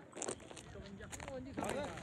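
Faint talking from people some way off, a few short bursts of voice with no clear words.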